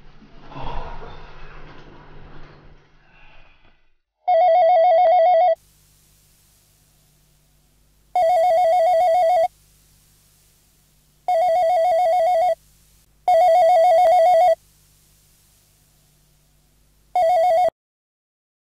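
Electronic desk telephone ringing with a warbling trill, five rings of about a second each; the last ring is cut short as the handset is picked up.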